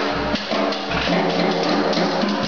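Live blues band playing: electric guitar, electric bass, drum kit and harmonica together, with sustained pitched notes over a steady drum beat.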